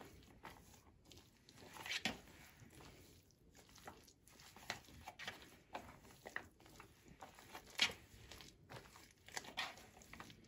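Spatula stirring and folding mayonnaise through potato salad in a plastic bowl: faint, irregular wet squelches and soft scrapes, with a few slightly louder strokes.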